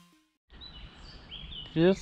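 The last note of an electronic music track dies away, a short silence follows, then quiet woodland ambience with faint bird chirps.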